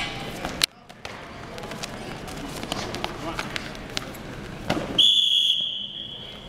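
Gym crowd chatter with scattered sharp knocks and thuds from the fighters on the mat. About five seconds in, a referee's whistle sounds one long, steady, shrill blast, the loudest sound.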